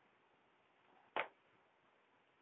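A single short, sharp click about a second in; otherwise only faint room noise.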